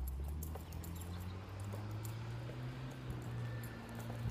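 Low, steady hum of a vehicle engine by the road, with faint footsteps on pavement.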